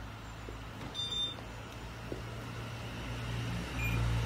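A steady low mechanical hum with a faint background haze, and two short faint beeps, one about a second in and one near the end.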